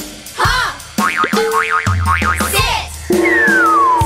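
Cartoon sound effects over a children's music track with a drum beat: springy, wobbling boings in the middle, then a long descending slide-whistle glide from about three seconds in.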